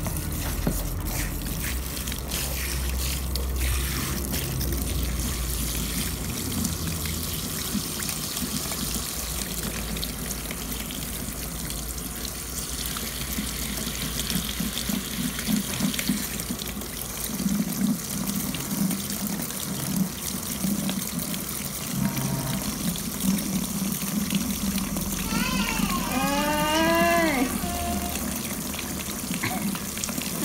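Water running steadily from a handheld salon shower head, spraying over wet hair and around the ear at a hair-wash basin. Near the end a brief wavering, high-pitched sound rises over the water.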